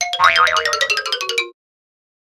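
Short cartoon-style musical sting, a quick run of bright notes over a line that steps down in pitch, cutting off suddenly about a second and a half in.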